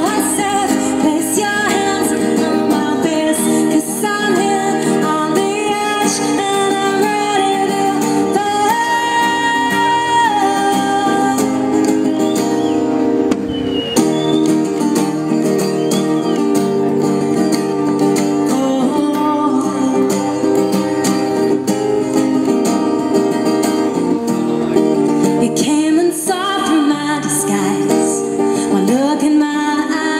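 A woman singing live to her own acoustic guitar accompaniment, with a long held note about nine seconds in.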